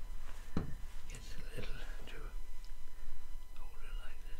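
A knock on the wooden workbench about half a second in, then soft handling of a plastic glue bottle and small wooden blocks, with quiet indistinct muttering.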